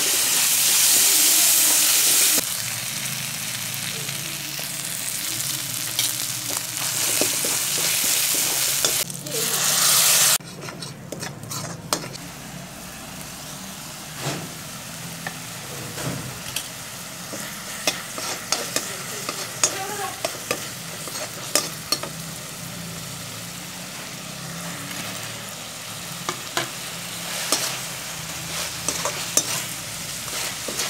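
Food sizzling as it fries in a metal wok, stirred and scraped with a slotted metal spatula. The sizzling is loud for the first couple of seconds and again briefly near the middle, then quieter, with scattered clicks and scrapes of the spatula against the pan.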